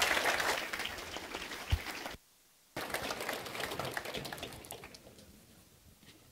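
Large audience applauding. The clapping cuts out abruptly for about half a second near the middle, then comes back softer and dies away.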